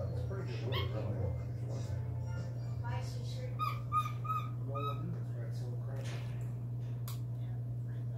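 Capuchin monkey giving a quick run of about five short, high notes a few seconds in while it eats.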